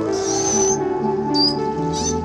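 Background music with sustained tones, over which beluga whales give high whistles: one held whistle in the first part, then shorter whistles about a second and a half in and again at the end.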